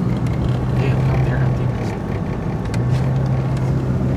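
Car's engine and tyre noise heard from inside the cabin while driving: a steady low drone that eases for a moment about two seconds in, then comes back.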